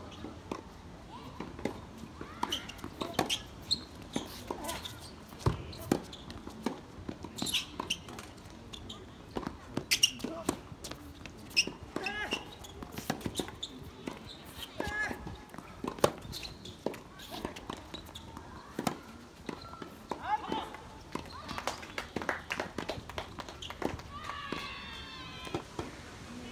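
Tennis rally on a hard court: sharp racket strikes on the ball and ball bounces at irregular intervals.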